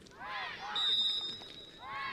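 Football players' shouts on the pitch, with a short, steady referee's whistle blast about a second in.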